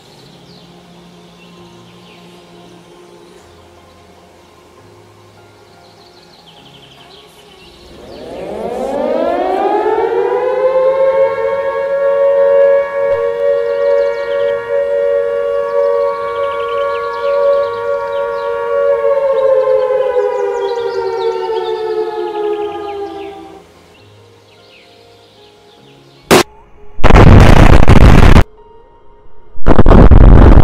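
Warning siren winding up over about two seconds into a steady wail, holding for roughly ten seconds, then slowly winding down and stopping: the alert before a blast test. A few seconds later a sharp crack and then a very loud explosion near the end.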